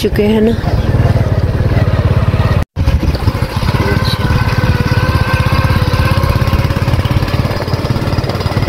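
Small single-cylinder motorcycle engine running steadily under way, heard from on the bike. The sound cuts out for a moment about three seconds in, then carries on.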